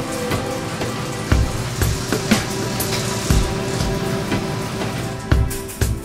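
Background music with a steady beat, a heavy low hit about once a second under held tones.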